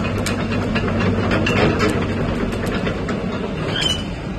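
Caterpillar 312D excavator's diesel engine running steadily, with repeated metal clanks and clicks from the machine as it moves, and a brief high squeak near the end.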